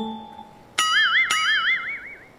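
Two plucked-string notes about half a second apart, each ringing on with a wide wobbling pitch: a comic musical sting.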